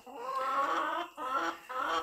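Chickens calling: one drawn-out call of nearly a second, then two shorter ones.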